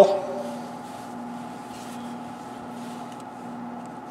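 Low, steady hum of workshop room tone with no distinct sound events.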